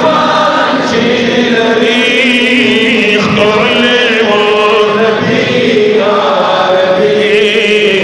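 Men singing a Pashto naat (devotional poem in praise of the Prophet), voices only. A steady long-held note runs underneath while the melody above it wavers and turns in ornaments.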